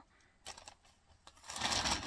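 Plastic mailer bag rustling and crinkling as it is handled: a faint rustle about half a second in, then louder crinkling from about one and a half seconds in.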